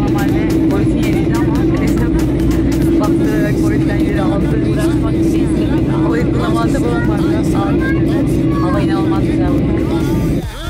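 Steady in-flight cabin drone of a jet airliner, an even hum that holds without change, with voices over it.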